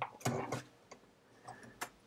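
A few faint clicks and a soft rustle of a pencil and hand handling a paper sketchbook, with a sharper click near the end.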